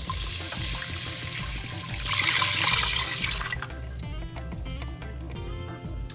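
Chicken broth pouring from a measuring cup into a hot roux in a saucepan. The pour lasts about three and a half seconds, louder in its second half, then stops. Background music plays throughout.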